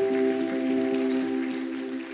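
A sustained chord held on a keyboard, several steady notes sounding together and slowly fading toward the end.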